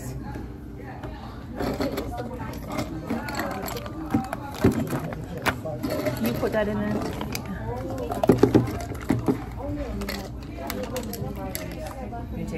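Voices talking in a restaurant, with a few sharp clinks of ice and glass, a cluster of them about eight seconds in.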